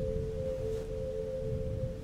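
Score drone: a sustained ringing tone made of two steady, close pitches held together over a low rumble.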